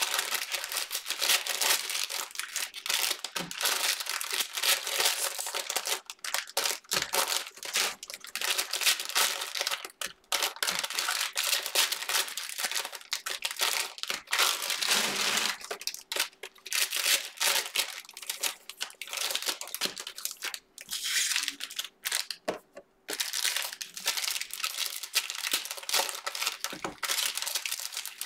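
Cellophane wrappers of Panini Prizm NFL cello-pack trading cards being torn open and crinkled by hand, pack after pack. The crackling runs on almost without a break, with a few short pauses.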